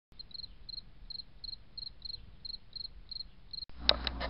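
Cricket chirping at an even pace, about three chirps a second, each a quick run of two or three high pulses. Shortly before the end the chirping cuts off abruptly, replaced by a louder low rumble and a sharp click.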